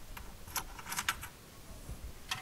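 Paper and photographs handled against a wall, giving a few short crisp rustles and clicks in two clusters, about half a second and about a second in.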